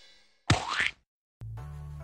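A short cartoon-style 'boing' sound effect with a quick upward pitch glide, about half a second in, as the tail of the intro music dies away. A low steady hum starts near the end.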